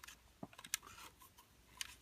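A few faint, sharp clicks of nylon zip ties and the plastic quadcopter body being handled, as the ties are fed into the body's slots.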